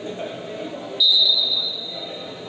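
A single whistle blast about a second in: one high, steady tone that starts suddenly and fades over about a second, over the murmur of a gym during a basketball game.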